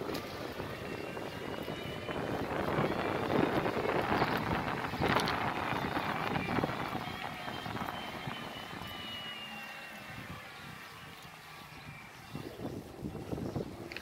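Wind buffeting the microphone and tyre noise from a fat-tyre bike riding up a paved lane, loudest in the first half and easing off later. Through it runs a faint, steady high whine that falls slightly in pitch, with a few sharp knocks.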